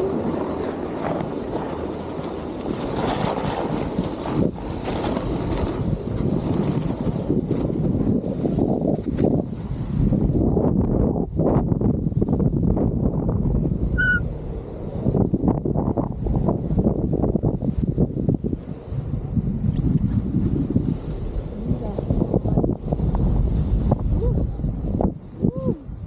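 Snowboard sliding and scraping over snow, with heavy wind noise buffeting the action camera's microphone; the rushing noise rises and falls as the rider carves down the run.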